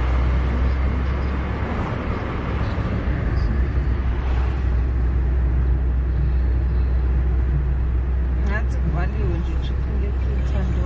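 Steady low rumble of a car's engine and tyres on the road, heard from inside the moving car's cabin. Near the end there is a brief voice.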